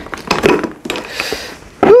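A cardboard gift box opened by hand: scattered small knocks, scrapes and rustling as the lid is lifted off. Near the end a voice says "ooh".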